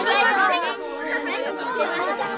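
Several children's voices chattering over one another, an excited group babble with no single clear speaker.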